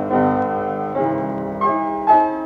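Solo piano playing a silent-film misterioso for uncanny situations, three chords struck and left to ring, about one every half second to second.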